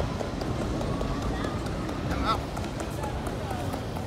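City street hubbub: passers-by talking over a steady low rumble, with one short high squeal about two seconds in.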